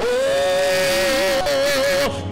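Two voices singing through microphones: one holds a single long high note while a second, lower voice moves beneath it, both breaking off just before the end.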